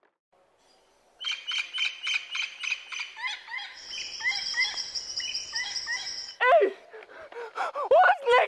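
After about a second of near silence, birds start calling: rapid, repeated short chirps and whistles, joined midway by a steady high-pitched trill. Near the end a loud cry falls in pitch.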